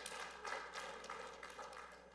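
Faint scattered clapping from a congregation, dying away.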